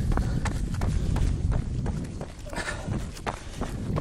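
Running footsteps on a packed-dirt trail, a quick series of footfalls over a low rumble on the microphone.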